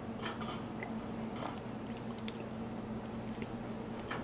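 Faint mouth sounds of someone sipping and swallowing an almond-milk eggnog from a cup: a few small, scattered clicks and slurps. A steady low hum runs underneath.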